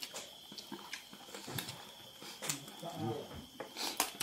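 Close-up eating sounds: chewing and lip smacking, with scattered sharp clicks, as food is eaten by hand. A faint steady high tone runs underneath.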